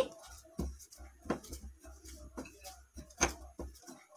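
Hands kneading soft, oiled gram-flour dough in a glass bowl: quiet, irregular squishes and light taps, the sharpest about three seconds in.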